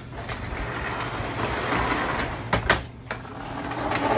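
Lionel O-gauge model train on the layout: a steady mechanical whirr and rattle over a low hum, with two sharp clicks about two and a half seconds in.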